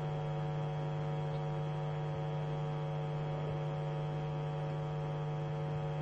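Steady electrical hum with a buzzy run of evenly spaced overtones on an open telephone call-in line.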